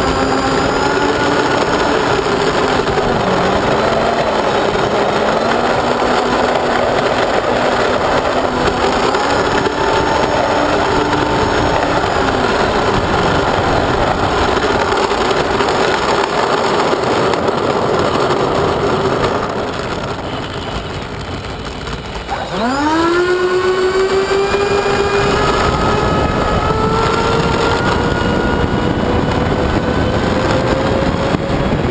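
Twin electric ducted fans of an RC A-10 model jet whining steadily while it taxis, easing off about 19 seconds in. About 22 seconds in they spool up sharply in a rising whine that keeps climbing through the takeoff roll.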